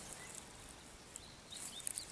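Quiet outdoor ambience in grassland, with a few faint bird chirps and a couple of soft clicks in the second half.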